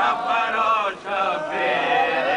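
Noha, an Urdu mourning lament, chanted by a male reciter and his group, with a short break about a second in.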